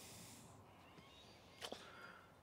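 Near silence: faint background hiss, with a single faint click near the end.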